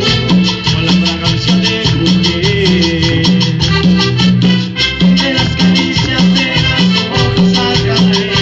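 Live band playing amplified Latin dance music: electric guitar, keyboard, bass and drums with shaker-type percussion, in a quick, even beat.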